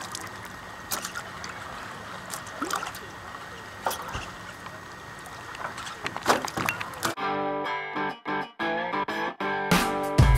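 Splashing and sharp knocks as a hooked catfish is lifted from the water beside a boat. About seven seconds in, music with a steady pitched accompaniment cuts in suddenly.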